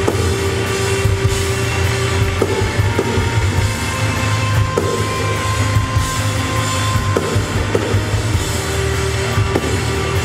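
Live rock band playing loud, dense music: distorted electric guitar and bass holding long notes over a pounding drum kit with cymbals.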